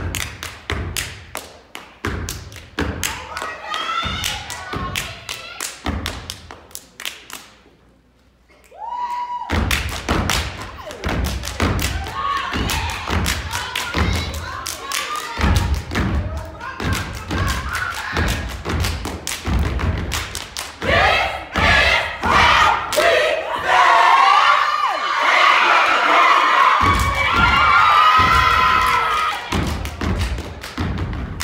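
Step team stomping and clapping in fast, tight rhythm on a wooden stage floor, with a brief lull about eight seconds in. In the second half, crowd cheering and shouting rises loud over the steps.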